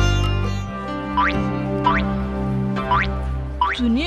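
Cartoon background music with held low notes, topped by four quick upward-sliding comic sound effects, about one a second.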